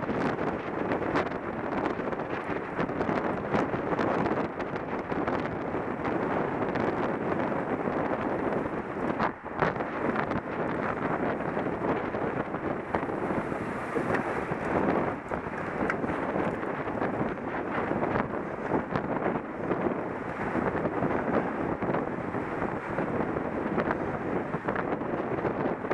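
Wind buffeting the microphone of a helmet camera on a moving road bicycle: a steady rushing noise that swells and eases in gusts, with a short dip about nine and a half seconds in.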